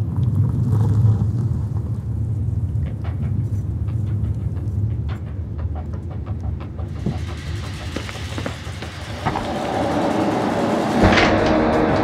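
A low, dark rumbling drone with scattered faint clicks, typical of a thriller's opening sound design. In the second half it swells into a louder, denser rumble, with a sharp hit near the end.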